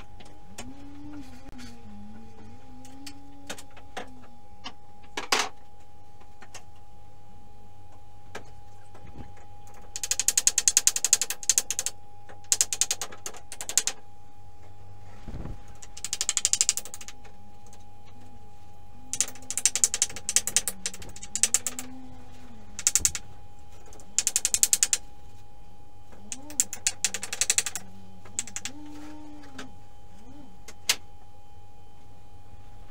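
Repeated bursts of dry scratching and clattering on old wooden floorboards, each a second or two long with pauses between, as the floor is swept and loose subfloor boards are handled.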